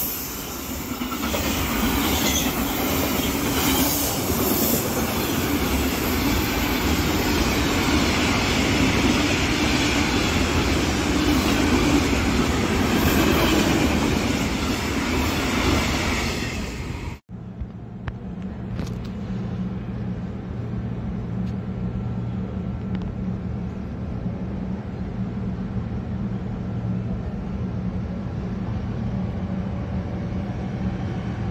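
Freight train wagons passing close at speed, wheels running on the rails. About two-thirds of the way in the sound cuts off abruptly, leaving a quieter, steady low hum.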